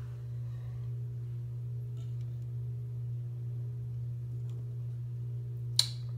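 A steady low electrical hum with a couple of fainter tones above it, and one sharp click near the end as the plastic ball mold is set against the plastic beaker.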